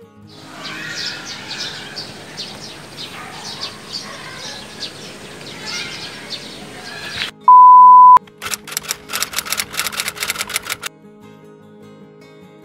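Background music, with an outdoor hiss and short chirps over it for the first seven seconds. Then a loud, steady beep tone lasting under a second, followed by a quick run of clicks, about seven a second for two seconds.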